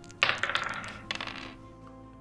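Dice rolled onto a hard surface: a sudden clattering rattle of small hard clicks that dies away after about a second.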